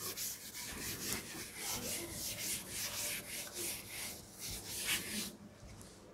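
Chalkboard duster wiping a blackboard in quick back-and-forth strokes, about three a second, stopping a little after five seconds in.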